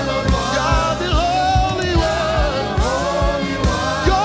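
Gospel worship singing: a lead voice with several backing singers on microphones, held and gliding notes over band accompaniment with a steady low beat.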